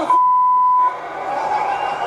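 Censor bleep: a single steady high-pitched beep lasting just under a second, with all other sound muted beneath it, masking a swear word. Low background noise returns after it.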